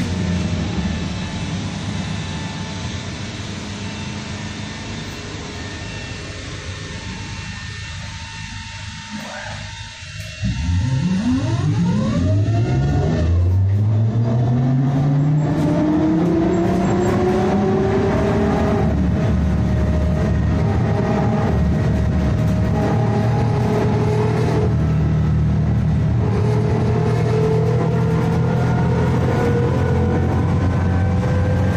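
Škoda 14Tr trolleybus heard from inside the passenger cabin. For the first ten seconds it runs slowly with a fading drone. About ten seconds in, the electric traction motor's whine comes in and rises in pitch as the trolleybus pulls away and picks up speed, then settles into a steady whine that climbs again more gently later on.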